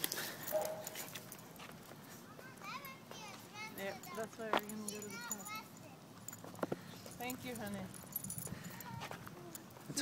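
Faint, high-pitched voice sounds come and go, with two sharp clicks in the middle.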